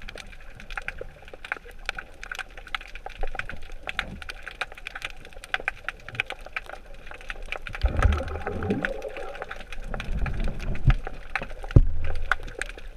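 Underwater sound in murky water: a continuous crackle of sharp clicks, with low rumbling swells about eight seconds in and again near the end.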